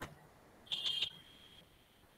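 A single short, high-pitched whistle-like tone, under a second long, starting strong and then fading away.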